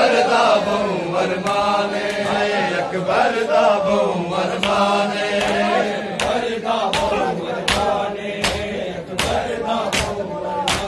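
Men chanting a noha, a Punjabi Shia lament for Ali Akbar, as a group. About five seconds in, rhythmic matam joins: open hands striking bare chests together, roughly one beat every three quarters of a second.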